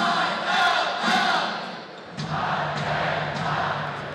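Crowd chanting in unison, in two phrases: the second starts about two seconds in.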